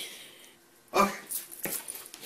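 Corgi vocalizing in a few short sounds from about halfway through, the first the loudest, as it refuses to go outside.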